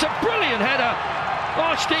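A male football commentator's voice over a steady background of match noise.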